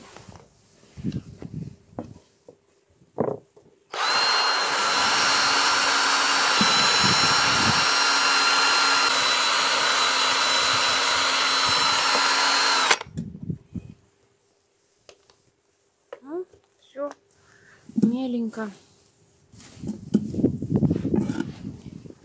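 Makita cordless drill spinning a threaded stud inside a lidded enamel pot of dry moss, shredding it. The motor runs at a steady speed with an even whine for about nine seconds, then stops abruptly.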